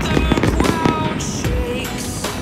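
Aerial fireworks bursting in a dense barrage of low booms and crackles, mixed with loud music.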